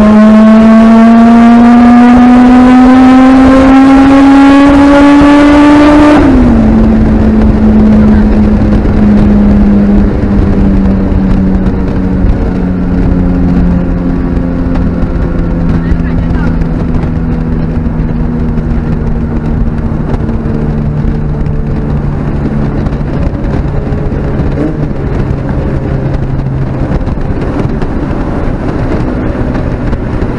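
Turbocharged Honda B16 four-cylinder at full throttle under boost, heard from inside the cabin: the engine note climbs steadily for about six seconds, then drops sharply. After that the revs sink slowly and evenly over the road and tyre rumble as the car comes off the pull.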